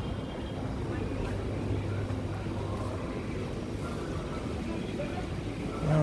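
Convenience-store background: faint, indistinct voices over a low steady hum, with a short louder voice at the very end.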